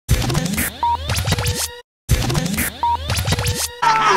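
A short electronic intro sting of sweeping, scratch-like pitch glides and brief beeps over a low hum, played twice with a moment of silence between.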